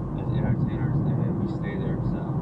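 Steady low road and engine rumble heard inside a moving car's cabin, with faint talk over it.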